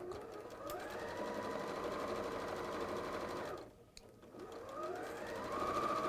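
Electric sewing machine stitching patchwork fabric: the motor speeds up with a rising whine, runs steadily for a few seconds, stops briefly a little past the middle, then speeds up again and runs on.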